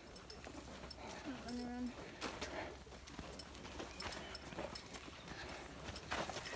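Faint footsteps and paw falls of hikers and a dog on a dirt trail, scattered light steps throughout, with a short faint voice-like call about a second and a half in.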